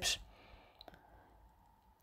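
Near silence: the tail of a spoken word, then quiet room tone with two faint clicks a little under a second in.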